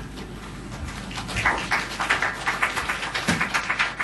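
Scattered applause from a small audience: a quick run of individual claps that starts about a second in.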